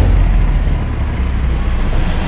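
Loud, steady low rumble of wind and road noise on the microphone of a moving rider, with no distinct engine or other event standing out.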